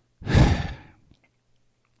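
A man's heavy sigh, one loud breathy exhale into a close microphone, starting about a quarter second in and fading out within about a second.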